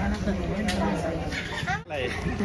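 Indistinct voices talking, with no clear words, cut off abruptly near the end.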